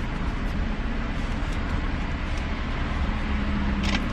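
Steady low rumble of a vehicle idling, heard from inside the car's cabin.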